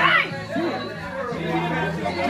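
Several people talking over one another, with music playing in the background; a brief high-pitched cry rising in pitch right at the start.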